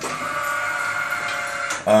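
Small demonstration press brake's drive running as the ram moves, a steady pitched hum that cuts off near the end.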